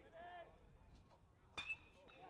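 A metal baseball bat hitting a pitched ball about one and a half seconds in: a single sharp crack with a brief ringing ping, from solid contact driven well into the outfield. A faint voice is heard near the start.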